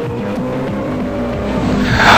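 News-programme intro music playing under the logo, swelling near the end into a loud rising whoosh like a car speeding past.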